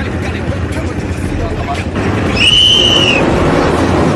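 Several ATV (quad bike) engines running with a steady low drone that grows louder about two seconds in. Midway, a high whistle-like tone rises and falls for under a second.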